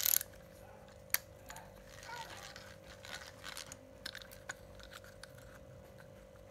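Small plastic size-1000 spinning reel, cranked for a moment at the start with a short gear whir, then handled with a few scattered light clicks and taps. A faint steady hum runs underneath.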